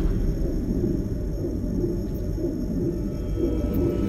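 Cinematic soundtrack opening a carmaker's promotional film: a dense, deep rumble with faint steady high tones above it.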